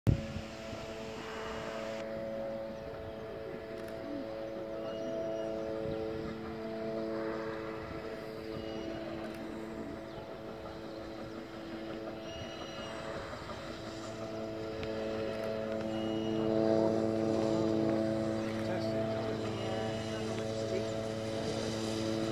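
A steam-hauled train, a BR Standard Class 9F 2-10-0 locomotive with coaches, approaches slowly at low speed. It makes a steady drone that grows louder about two-thirds of the way through as it nears.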